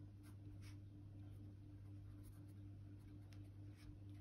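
Faint scratching of a pen writing on paper, in a few short, irregular strokes.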